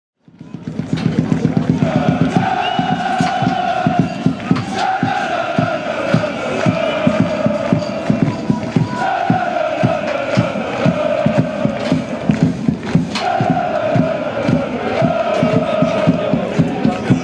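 Football supporters singing a chant together to a steady beat, celebrating their team's win with the players.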